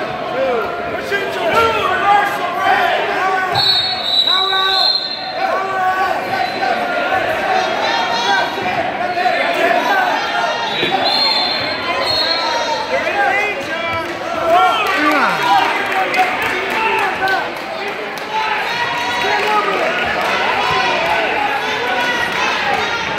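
Many voices of wrestling coaches and spectators shouting and calling out over one another, with occasional thuds.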